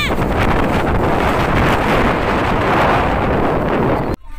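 Strong storm wind buffeting the microphone: a loud, steady rushing roar that covers everything else.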